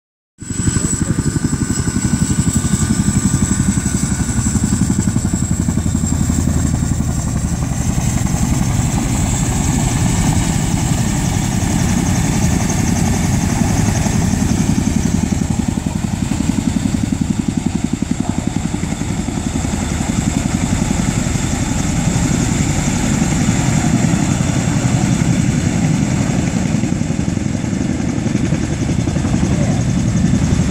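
Tandem-rotor CH-47 Chinook helicopter flying low and hovering over water: a loud, steady, rapid rotor chop with a thin high turbine whine above it.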